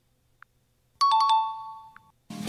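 A bright chime sound effect about halfway in: a quick run of struck notes settling on two ringing tones that fade over about a second, marking a correct answer.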